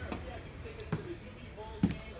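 Footsteps on a hollow trailer floor: two dull thumps about a second apart, the second louder, with faint voices in the background.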